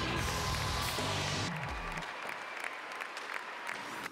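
Background music that fades out about two seconds in, over an arena crowd applauding.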